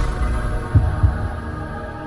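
Intro music: a sustained drone with deep, heartbeat-like double thumps, one pair about three-quarters of a second in, and a high steady tone above it.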